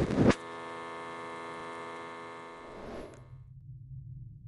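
A short loud handling noise at the start, then a steady electrical buzzing hum with many evenly spaced overtones that cuts off suddenly about three seconds in. A faint low drone takes over near the end.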